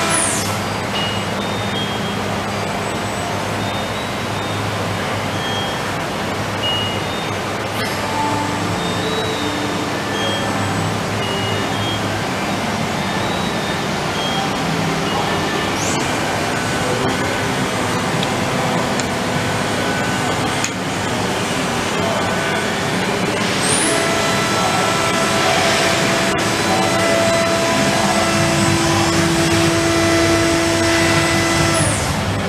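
Steady industrial machine-shop noise from powered machinery: a dense running hum with several steady tones, and short higher tones at varying pitches coming and going. A louder hiss swells for a couple of seconds about three-quarters of the way through.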